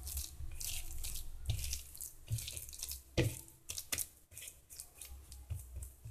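A hand mixing and squeezing coarsely ground, soaked chana dal dough for paruppu vadai on a plate: irregular wet squishing and gritty rustling strokes, with a louder thump a little after three seconds.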